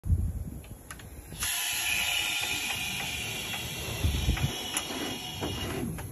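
Compressed air hissing steadily through the hose into a RAKJAK inflatable air-bag jack as it inflates under a truck axle. The hiss starts abruptly about a second and a half in and cuts off just before the end. A low knock at the very start and a few more low knocks partway through.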